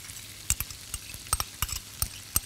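Onions, garlic and cashews sizzling in butter in a pot as diced green pepper is tipped in, with a few sharp clicks and knocks against the pot in the second half.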